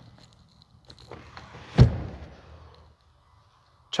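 A single loud thunk about two seconds in, typical of the lid of a Ram 2500 crew cab's in-floor rear storage bin being shut, with faint handling rustle before it.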